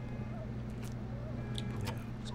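Steady low hum of refrigerated drink coolers, with only faint small sounds over it.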